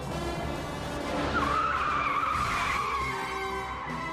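Car tyres squealing for about two and a half seconds, starting about a second in, as a remote-controlled car is driven hard, over film score music.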